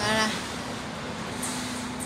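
A steady low motor hum over a constant rushing background noise, with a brief voice sound at the very start.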